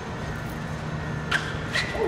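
Steady low hum of a concrete parking garage, with two short sharp clicks about a second and a half in, a few tenths of a second apart.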